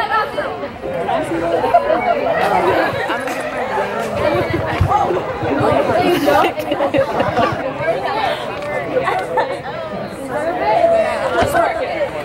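Group chatter: many people talking at once in overlapping voices, with no music.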